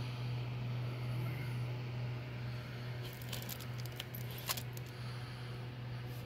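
A steady low hum throughout, with a few light clicks in the middle.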